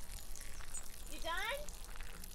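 Mostly speech: a voice asks a short question about a second in, over faint outdoor background with a few faint, high bird chirps.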